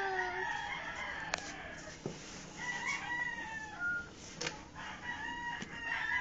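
Birds calling: several drawn-out calls that each fall slightly in pitch, with a couple of sharp clicks between them.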